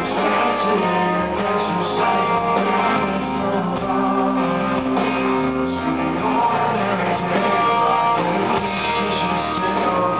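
Live rock band playing, with strummed guitars, bass and a male lead vocal.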